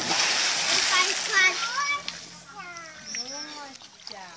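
A big splash as a person's body hits the pool water after a somersault dive, the spray dying away over about a second and a half. Children's voices call out over it and after it.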